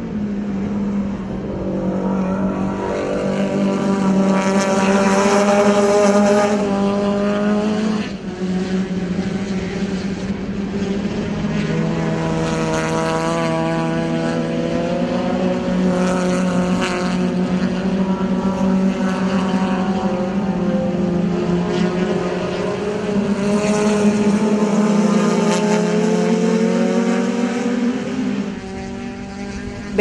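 Several touring race cars' engines at high revs, their notes rising and falling as they shift and pass through a corner. The sound swells twice as cars pass close, with a sudden break about a quarter of the way through.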